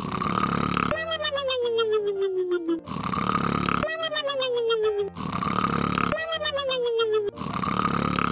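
Cartoon snoring sound effect: a rasping snore in, followed by a whistling breath out that slides down in pitch, repeating about every two and a half seconds, three times through.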